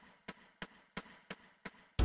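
Metronome-style count-in clicks of a backing track's lead-in, six even clicks about three a second at tempo 175, before the band comes in.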